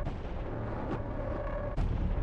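Trailer sound design: a low rumbling drone with faint held tones, struck by sharp booming hits, the loudest just before the end.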